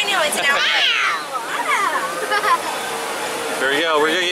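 High-pitched voices of raft riders calling out over rushing white water, dying away after about two and a half seconds and leaving the water's rush.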